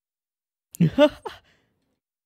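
A man's short sigh-like vocal sound, a breathy onset followed by a brief voiced tone that rises slightly in pitch, about a second in.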